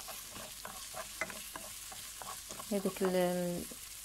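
A wooden spatula stirs diced aubergine, onion and tomato frying in oil in a granite-coated non-stick pan: a light, steady sizzle with frequent small scrapes and taps of the spatula against the pan. A woman's voice draws out a short word about three seconds in.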